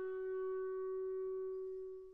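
Unaccompanied solo clarinet holding one long, steady note at the end of a falling phrase, the note fading away at the very end.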